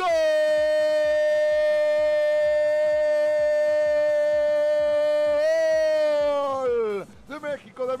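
A football commentator's long drawn-out goal call, "¡Gol!", held on one steady shouted note for about seven seconds. It lifts a little in pitch near the end, then drops away as his breath runs out.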